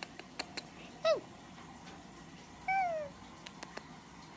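Small chihuahua-type dog whining twice: a short high whimper that falls away about a second in, then a longer falling whine near the end. Faint clicks in between, with lips against the dog's fur.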